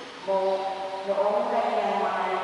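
A woman's voice chanting a liturgical text into a microphone, in long notes held on a steady pitch, with a step to a new note about a second in.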